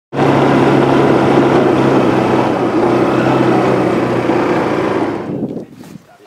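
CRUX rotary percussive drill running: a loud, steady mechanical whir with two low tones. The lower tone drops out about four seconds in, and the sound fades away near the end.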